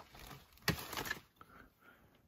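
Handling noise as a wooden stick-horse toy is pulled out of a packed crate of clutter: faint rustling with a sharp knock about two-thirds of a second in and a lighter one soon after.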